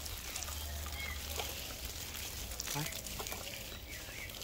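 Water spraying from a garden hose onto dry ground, a steady soft hiss.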